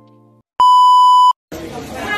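A single loud, steady electronic beep tone lasting under a second, cutting in and out abruptly, with the end of soft sustained music just before it. A noisy room with people's voices starts right after it.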